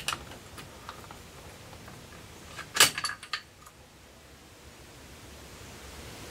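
Mosin-Nagant bolt-action rifle dry-firing on a 7.62x54R cartridge that does not go off: one sharp click of the firing pin falling about three seconds in, then a few small metallic clicks. This is a light strike, which the owner puts down to a weakened firing pin spring.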